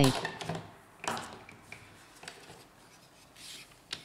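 Hands handling and turning over a plastic printer transfer belt unit on a table: a scrape about a second in, a few light clicks, a brief rustle, and a sharp click near the end.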